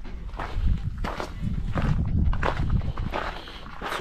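Footsteps walking, a series of uneven steps over a low rumble.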